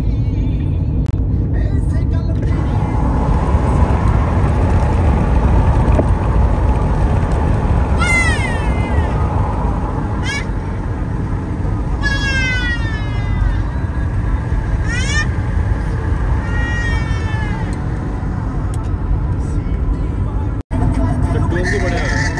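Steady car-cabin road and engine rumble at highway speed. Over it, a small child in the car lets out about five high, wavering cries or squeals over roughly ten seconds, starting about a third of the way in.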